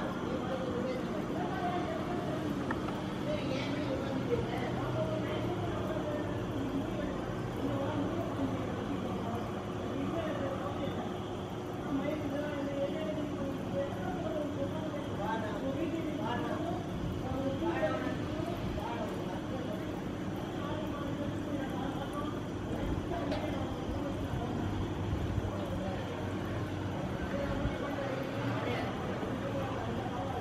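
Faint, indistinct voices talking in the background over a steady low hum.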